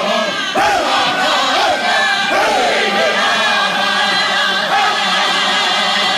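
Music with several voices singing together in repeated phrases that slide down in pitch.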